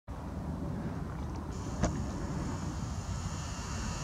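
Nikon P900 zoom motor, heard through the camera's own microphone as a faint high whine that starts about a second and a half in, with a single click just after, over a steady low rumble.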